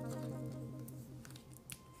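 Soft background music holding a low sustained note that fades away, with a few light clicks of fortune-telling cards being picked up and gathered by hand, about a second and a half in.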